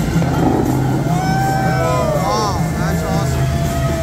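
Dubai Fountain show music played over loudspeakers, with a singing voice sliding and bending through a melody from about a second in to near the end, over the steady rush of the fountain's water jets.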